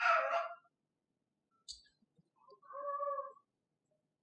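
A young child's high-pitched voice: two short calls or whimpers, one right at the start and a longer, steadier one around three seconds in.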